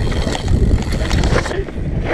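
Mountain bike riding fast down a rough dirt trail: wind rushing over the camera microphone and tyres rumbling over the ground, with short clicks and knocks from the bike over the bumps. The hiss eases off about one and a half seconds in.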